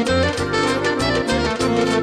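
Upbeat live band music: saxophone over keyboard and electronic drums, with a steady bass beat.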